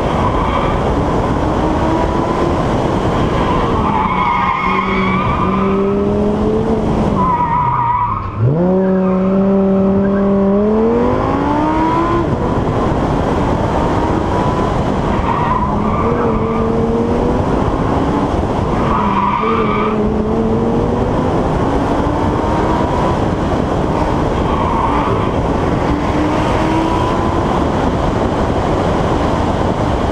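Car engine pulling hard up a winding road, its note climbing and stepping through the gears, under heavy wind and road rush on an outside-mounted microphone. About eight seconds in, the engine note drops sharply as the car slows for a bend, then climbs again as it accelerates away.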